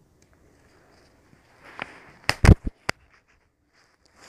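Hand-handling noise from working a wristband off the wrist: mostly quiet, then a faint rustle and a few sharp clicks with one heavier thump between two and three seconds in.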